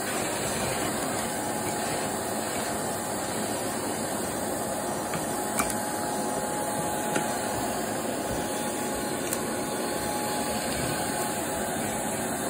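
Shark vacuum cleaner running steadily while it is pushed over carpet, with a few short sharp clicks of debris being sucked up the wand.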